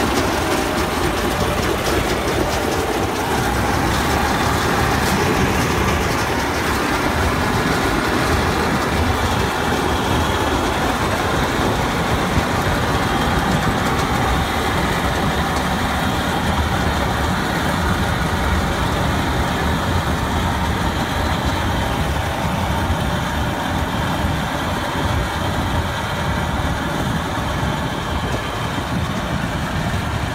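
A Standard Corporation combine harvester mounted on a John Deere tractor runs steadily as it cuts and threshes rice paddy. The tractor engine and the threshing machinery make one continuous, unbroken noise that eases slightly toward the end.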